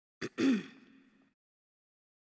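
A man's short breathy vocal sound at a close microphone: a small click, then a quick catch of breath and a brief voiced sound falling in pitch, fading out within about a second.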